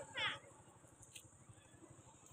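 A baby long-tailed macaque gives one short, high squeal that wavers quickly in pitch, just after the start. A faint click follows about a second later.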